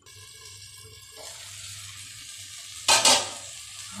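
Tomato and onion masala frying in oil in a steel kadhai, a steady sizzle as the tomatoes cook down and the oil begins to separate. About three seconds in comes one loud short metal clank.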